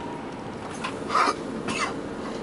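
A person coughs twice inside a coach cabin, a loud cough about a second in and a weaker one near the end. Under it runs the steady drone of the Prevost X345's Volvo D13 diesel engine.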